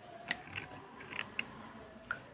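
Small blade scraping a wet slate pencil: a few short, crisp scrapes and clicks, about four in two seconds.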